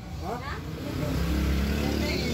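A motor vehicle's engine running, its low drone growing louder about halfway through, under faint background voices.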